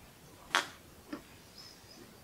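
A person sipping beer from a pint glass: a short, sharp gulp about half a second in, then a fainter one about a second in.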